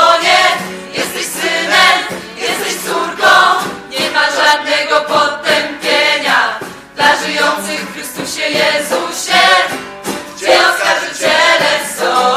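A choir singing a Christian worship song, many voices together in phrases with short breaks between them.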